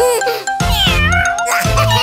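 Children's song music with a steady beat, overlaid with a cartoon kitten's meowing that glides up and down in pitch about halfway through.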